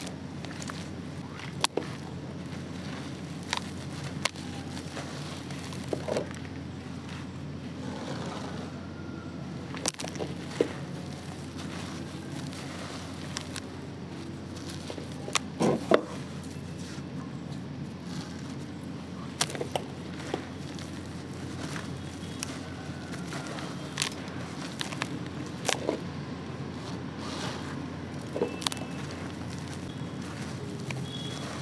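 Hands crumbling and pressing gritty concrete pieces in cement water in a plastic tub: scattered crackles and scrapes every second or two, the loudest cluster about halfway through, over a steady low background noise.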